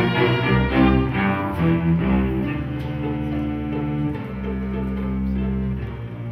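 String ensemble of violins, cellos and double bass playing a slow bowed piece, with moving lines in the first two seconds giving way to long held chords.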